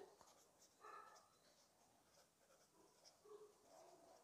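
Faint scratching of a pen on paper: a few short strokes as capital letters are written, the clearest about a second in.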